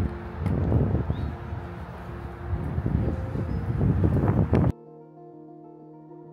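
Wind buffeting the microphone over soft background music. About three-quarters of the way through, the wind noise cuts off suddenly, leaving only the music.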